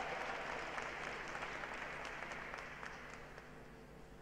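Audience applause dying away, the scattered claps thinning out toward the end.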